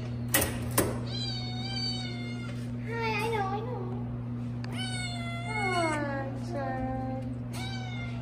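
A cat meowing repeatedly from its cage: four drawn-out meows, one falling in pitch. Two sharp clicks near the start from the wire cage door being opened.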